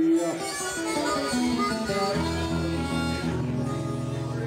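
Acoustic blues guitar picking along with held harmonica notes, an instrumental passage after a sung line. The harmonica settles into a low, steady chord about halfway through.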